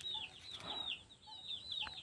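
Chicks peeping: a steady run of short, high-pitched peeps, each sliding down in pitch, several a second.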